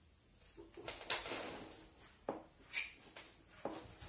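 Soft handling noises from a suede over-the-knee boot being adjusted on the leg: a light rustle, then a few short, light knocks.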